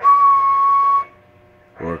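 A steady whistled note held for about a second into a CB radio's hand mic while it transmits, a whistle test that drives the transmitter's output power up on the meter.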